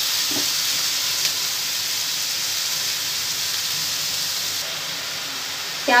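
Chopped onions sizzling in hot oil in a frying pan while being stirred, just after going in. A steady hiss that eases off slightly toward the end.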